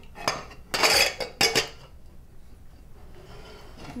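Stainless-steel pressure cooker lid clinking and clanking against the pot as it is worked into place, several sharp metal knocks in the first second and a half, then quieter scraping as the lid is fiddled with.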